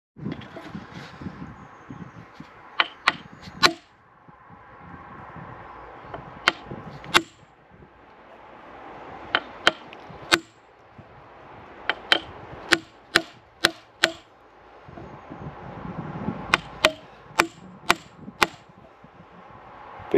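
A wooden mallet knocking on the back of an axe head, driving the blade into the end grain of an ash log to score a line for splitting. The knocks are sharp and come in short runs of two to six, about twenty in all.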